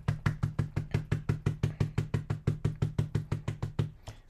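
Rapid, even dabbing of a small cotton or sponge dauber onto stamped paper and an ink pad on a cutting mat, about nine taps a second, each tap a soft knock on the tabletop.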